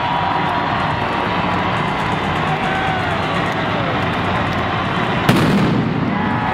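One loud stage pyrotechnic blast about five seconds in, with a low rumble ringing on after it, over steady arena crowd noise.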